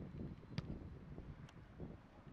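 Wind buffeting a camera microphone outdoors, a low rumble, with a couple of faint sharp ticks.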